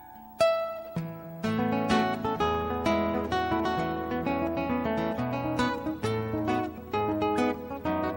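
Harp guitar played solo. Earlier notes ring away, then one bright plucked note sounds about half a second in. From about a second and a half comes a quick plucked melody over deep ringing bass strings.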